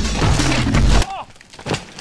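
Electronic drum-and-bass music with a heavy low end, which cuts off abruptly about a second in. A few brief fragments of a voice follow.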